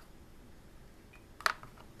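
A metal spoon stirring juice in a plastic jug, with one sharp click of spoon against plastic about one and a half seconds in; otherwise only a faint background.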